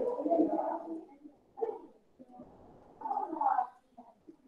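Indistinct, muffled speech in short stretches: through the first second, briefly about 1.6 s in, and again from about 3 to 3.7 s, with quiet gaps between.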